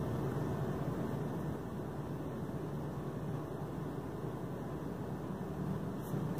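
Steady fan hum with an even low drone underneath, no distinct events.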